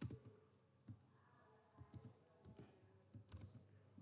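Faint computer keyboard keystrokes: a few soft, scattered clicks as text is typed.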